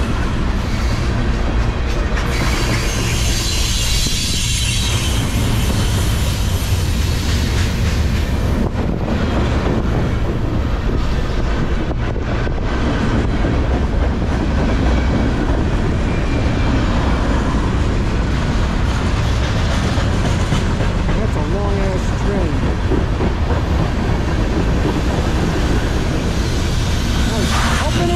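Freight train cars (tank cars, covered hoppers and boxcars) rolling past close by. Steel wheels on the rails make a loud, steady rumble.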